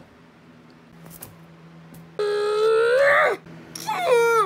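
A person's voice letting out one long, high-pitched scream a little past halfway, its pitch creeping up and then falling away as it breaks off. A short falling cry follows just before the end.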